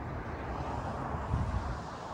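Steady buzz of distant highway traffic, not loud, with a slight low swell about one and a half seconds in.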